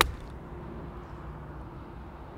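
A PXG 0317 ST forged blade eight iron striking a golf ball off the turf: one sharp click right at the start. A low, steady hum follows.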